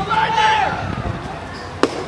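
A drawn-out shout from a voice at the field in the first half-second, then a single sharp crack near the end as the pitched baseball makes contact.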